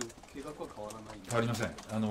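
A man's voice hesitating before he answers, with long, level-pitched hums of the "ええ" kind.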